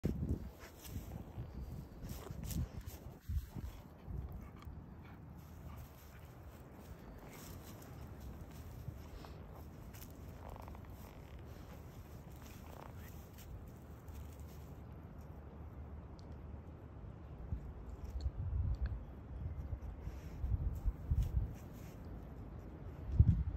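A dog sniffing and snuffling at the grass in short bursts, with louder clusters of sniffs near the end.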